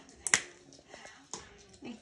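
A single sharp click about a third of a second in, then a softer knock about a second later: laundry being handled at a front-loading washer and dryer.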